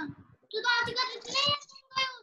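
A child's high-pitched voice in a few drawn-out, sing-song syllables, with a short sound at the start and another near the end; no words can be made out.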